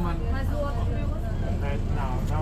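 Steady low rumble of a city bus heard from inside the cabin, with people talking over it.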